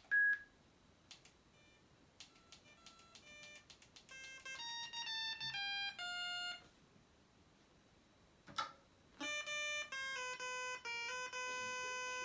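Commodore PET 2001 playing a tune through its CB2 sound mod into a small powered speaker: a melody of plain, buzzy single-tone electronic beeps stepping from note to note. The notes start faint and get louder about four seconds in, stop for a couple of seconds with a single click, then resume loud near the end.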